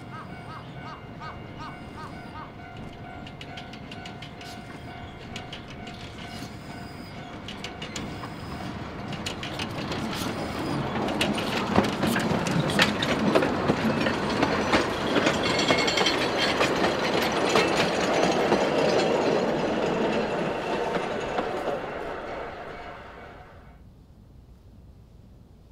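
A narrow-gauge forest railway train hauled by the Amamiya No. 21 steam locomotive runs past close by, its wheels clicking over the rail joints. The sound builds over the first half, is loudest with dense clicking in the second half, and cuts off suddenly near the end.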